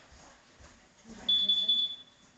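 A steady, high-pitched electronic beep on one tone. It starts a little past halfway and lasts under a second.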